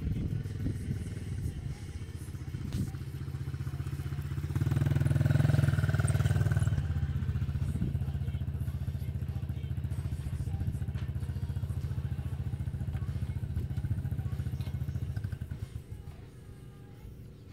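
Small youth dirt bike engine running steadily close by, swelling louder about five seconds in, then dropping away shortly before the end.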